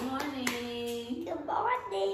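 Hand clapping, a quick run of claps that ends in the first half second, overlapped by held voice sounds.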